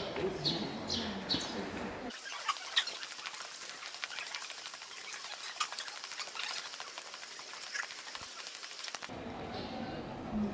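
Small birds chirping, a few short downward chirps in the first second and a half. Then, from about two seconds in to near the end, a dense high-pitched crackle of small clicks and ticks.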